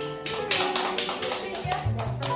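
Harmonica music playing a steady tune, with an audience clapping along in time, about three to four claps a second.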